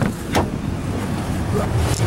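A person getting into a car: a knock at the start and a louder thud about half a second in, over a low steady rumble from the running car.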